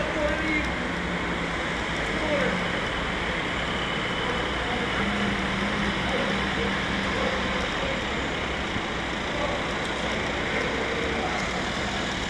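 Steady city street ambience: road traffic noise with faint, indistinct voices of people around.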